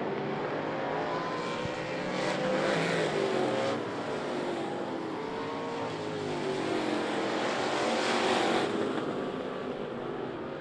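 A pack of street stock race cars running hard on a dirt oval, engines rising and falling in pitch as they go by. The sound swells loudest twice, about two to four seconds in and again around eight seconds.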